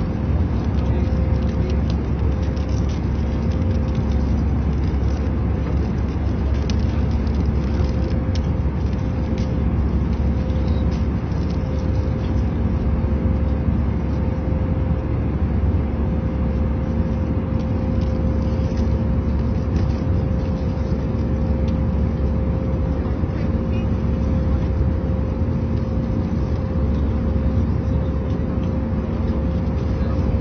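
Steady low roar of a jet airliner cabin in flight, with a constant hum running through it. A few light clicks and rustles of a plastic juice bottle and paper snack bag being handled.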